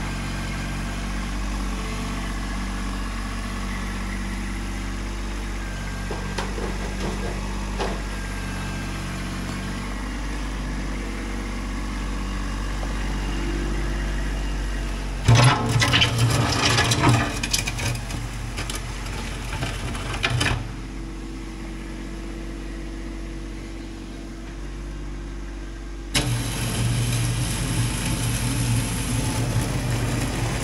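Kubota B2601 compact tractor's three-cylinder diesel engine running steadily while it works. About halfway through, a louder, harsher stretch of noise lasts about five seconds, and the level steps up again near the end.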